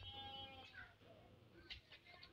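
Near silence, with a faint, drawn-out animal call in the first second.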